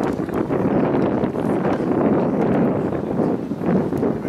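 Wind buffeting an outdoor camera microphone, a steady rumbling rush that rises and falls in strength, with a few faint ticks.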